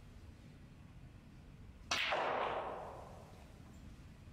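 A snooker cue strikes the cue ball with a sharp click about two seconds in, followed by a rushing noise that fades away over about a second.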